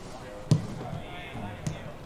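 Football being kicked: a loud sharp thud about half a second in and a lighter one near the end, over distant voices.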